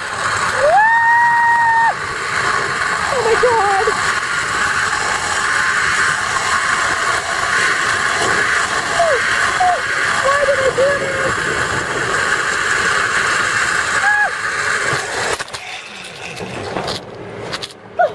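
Zipline trolley running down the cable, a steady loud rushing whir mixed with wind on the microphone, which dies down about three seconds before the end as the rider comes into the landing platform. A person gives a long high held cry about a second in, and a few shorter cries during the ride.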